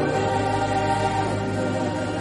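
Background music with a choir holding long, slowly changing notes.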